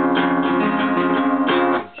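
Steel-string acoustic guitar with a capo, strummed: one chord rung out with quick repeated strums, cut off briefly near the end.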